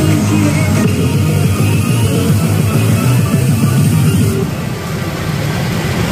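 Loud electronic music with a driving beat, the soundtrack of a pachinko machine in play.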